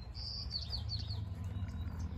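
A small bird chirping: one brief high note, then a quick run of short falling chirps lasting about a second, over a steady low rumble.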